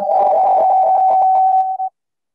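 Audio feedback on a video call: the speaker's own sound loops back through a second connected device, giving a steady electronic whistle over a garbled, crackling echo. It cuts off suddenly near the end.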